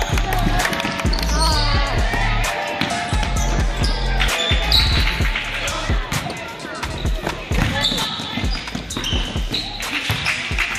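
Basketball game sounds: a ball bouncing on a hardwood gym floor with repeated thuds, brief high sneaker squeaks and voices, over background music with a heavy bass.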